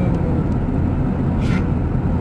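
Steady low road and engine rumble heard inside a car's cabin while it drives at highway speed. A brief hiss comes about one and a half seconds in.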